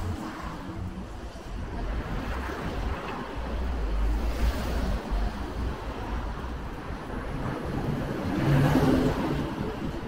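Road traffic going past on an adjacent road: a steady rush of tyres and engines that swells twice, the second and loudest time, with an engine hum, about eight and a half seconds in.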